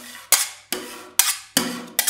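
Metal spatulas chopping ice-cream mix on a frozen steel cold plate: a sharp metal-on-metal tap about twice a second, each followed by a short scrape as the blade drags through the mix.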